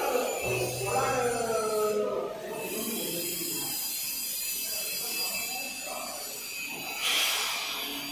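Hose pressure-test bench machinery running. A hum and whine last from about half a second to two seconds in, then a steady background noise follows, with a short hiss a little after seven seconds.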